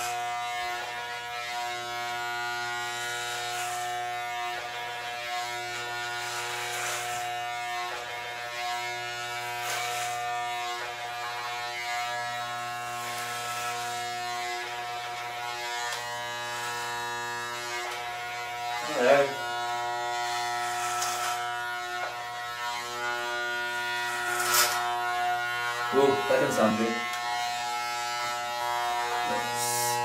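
Corded electric hair clippers running with a steady buzz, cutting the hair on a man's head, their tone dipping briefly now and then as the blades bite into hair.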